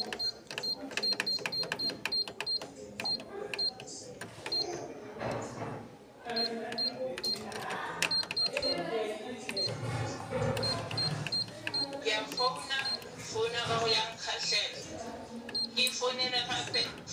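Canon MF8280Cw control panel beeping at each press of the scroll key, in runs of short high beeps about four a second, with people talking in the background.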